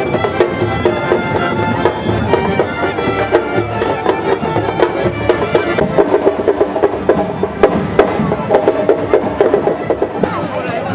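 Folk band of fiddles and accordion playing a lively traditional tune while marching. About six seconds in, the sound changes to a duller mix with sharp knocks in a steady beat.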